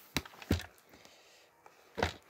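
A sealed cardboard product box being handled and turned over by hand: two light knocks close together near the start, then a couple of faint taps.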